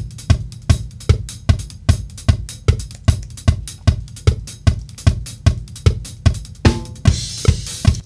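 Multitrack drum kit recording played back: a steady kick-and-snare beat with hi-hat, the drums quantised to the grid with Beat Detective and heard across an edit join. A cymbal crash rings near the end, and playback stops abruptly.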